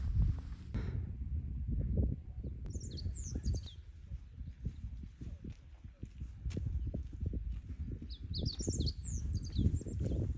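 A small songbird gives two bursts of quick, high, sliding chirps, about three seconds in and again near the end, over a constant low, uneven rumbling noise.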